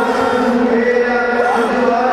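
Chanting voices singing long held notes.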